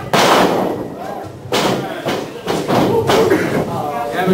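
A wrestler's body slams onto the wrestling ring's mat right at the start, a loud crash with a ringing tail from the ring. Further sharper thuds follow about a second and a half and two and a half seconds in, with voices shouting.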